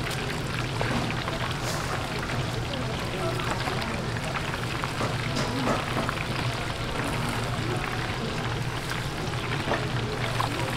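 Deep-fryer oil bubbling and crackling steadily around whole chickens frying in wire baskets, a dense hiss of fine crackles.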